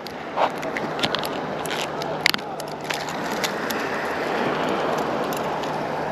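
Light clicks and rustles of hands untangling a mackerel feather rig, with line, small swivels and beads knocking together, mostly in the first half. Underneath is a steady wash of outdoor background noise that swells a little towards the middle.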